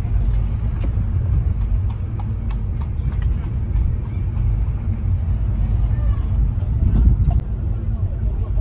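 Steady low rumble of a car's interior as it drives slowly, with faint scattered clip-clop of horses' hooves on the road outside.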